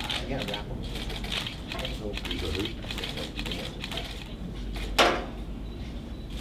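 Indistinct murmuring voices and small clattering noises from people in the room, with one sharp click about five seconds in.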